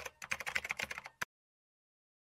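Computer-keyboard typing sound effect: a quick run of key clicks that stops about a second and a quarter in, followed by dead digital silence.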